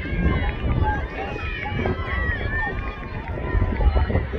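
Spectators at a track meet calling out and talking, several voices overlapping, none of them clear words.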